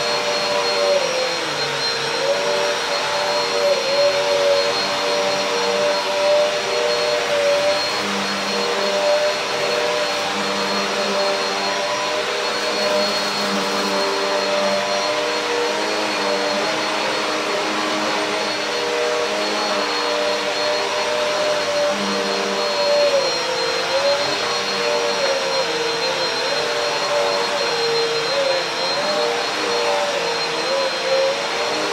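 Black+Decker Airswivel bagless upright vacuum cleaner running steadily while pushed back and forth over a rug, a constant high whine over the motor. Its motor tone dips briefly now and then, near the start and several times toward the end.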